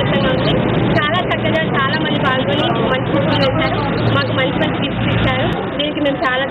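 A woman speaking Telugu into a handheld microphone, over a steady low background rumble.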